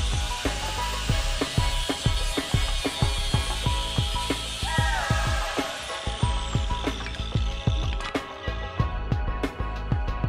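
Angle grinder with a cut-off wheel cutting through the motorcycle's metal floorboard mount: a high, hissing cut starts suddenly, and about seven seconds in the motor winds down with a falling whine. Music with a steady beat plays throughout.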